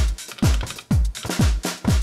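A house drum pattern looping on an Elektron Digitakt drum machine: a four-on-the-floor kick with a dropping pitch, about two kicks a second, with hi-hat ticks between them.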